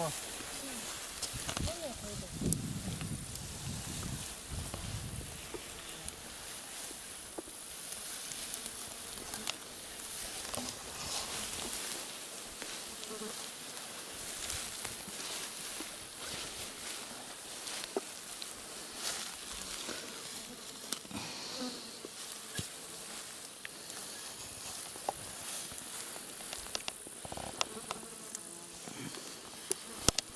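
Insects buzzing steadily in a summer meadow, with scattered small clicks and rustles throughout. Faint voices in the first few seconds.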